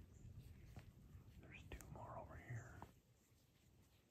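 A person whispering faintly for about a second, from about a second and a half in, over a low rumble of handling and wind noise.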